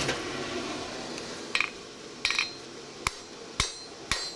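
Blacksmith working hot iron: four separate metallic strikes in the second half, about half a second to a second apart, the first two ringing briefly, as tongs and hammer meet iron and the anvil.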